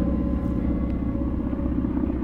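Background music between chords: a low, steady rumbling drone with a faint held tone above it.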